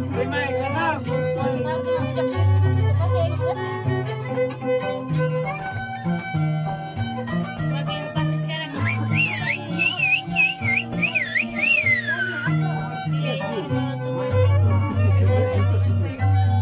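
Andean harp and violin playing carnival music: the harp's low plucked bass notes keep a steady pulse under the melody. Midway, a high wavering melody line with strong vibrato joins for a few seconds and ends in a downward slide.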